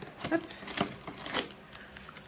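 Soft clicks and rustling of cardboard and wrapping being handled as a small item is taken out of an advent calendar box.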